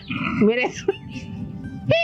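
People talking in Telugu over background music.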